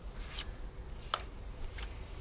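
Three light clicks, about two-thirds of a second apart, as a petrol strimmer is handled and laid down on grass, over a low steady rumble.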